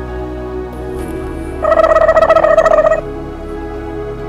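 Background music throughout. About a second and a half in, a loud, rapidly pulsing chattering bird call cuts in over it for about a second and a half, then stops suddenly.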